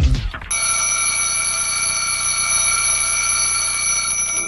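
Music with a beat cuts off about half a second in, and an alarm clock rings steadily and without a break for the rest.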